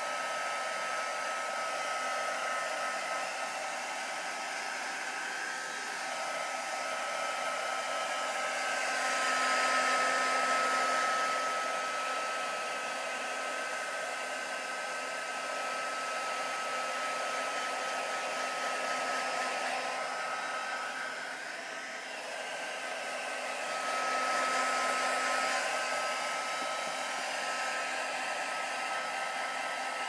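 Electric hot-air drying tool running steadily while drying wet paper. It is a rush of air with a steady whine, swelling louder about a third of the way in and again near the end.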